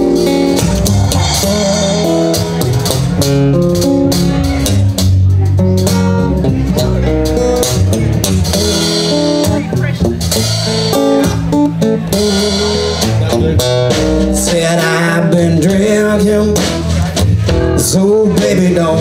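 A blues trio playing live: acoustic guitar, plucked upright double bass and a drum kit keeping a steady beat.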